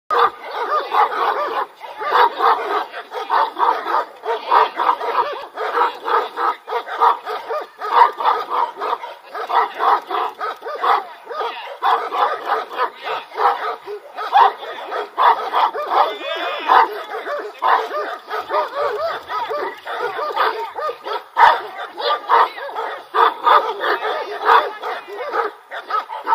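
Central Asian Shepherd Dog barking in a fast, steady run of deep barks, two or three a second with hardly a pause. The barks are aimed at a man in a padded protective suit.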